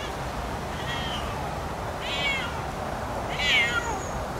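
A Siamese cat meowing three times, about a second apart: short, high calls, the last one loudest and trailing downward in pitch.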